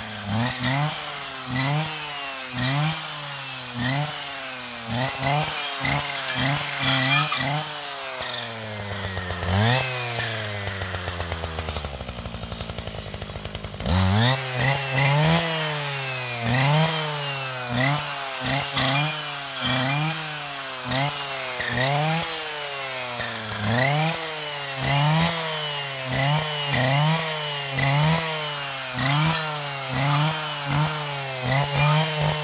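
Husqvarna 545RXT two-stroke brushcutter with a saw blade revved up and back down in short bursts, about once a second, as it cuts through brushwood saplings. Around the middle the engine falls back to idle for a couple of seconds, then the revving resumes.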